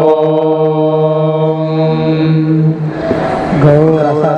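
Vedic chanting: a long 'Om' held on one steady pitch for nearly three seconds, then a brief breathy break before the recitation resumes near the end.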